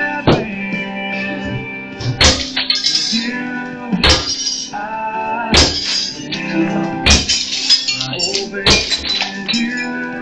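A song with singing plays loudly, and over it a bat smashes dishes set on a stack of tyres, with a sharp crash about every second and a half, six or seven times.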